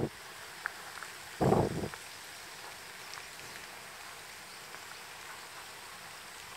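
A person sniffing twice close to the microphone, about a second and a half in, over a faint steady outdoor hiss.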